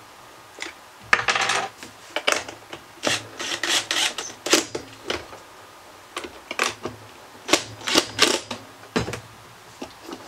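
A screw being driven with a cordless drill into the fridge's plastic handle bracket: irregular bursts of scraping and clicking with short pauses. The screw goes in hard.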